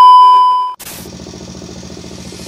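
A loud, steady, single-pitch test-tone beep of the kind played with TV colour bars, lasting under a second and cutting off abruptly. A quieter steady noise follows.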